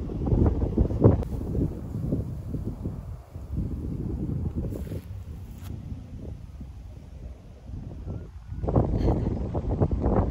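Wind buffeting the microphone: a low, gusting rumble, strongest about a second in and again near the end.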